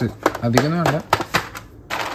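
A clear plastic tub of mixed nuts being opened: sharp clicks and crackles of the plastic lid, then a short rustle of nuts as a hand grabs some.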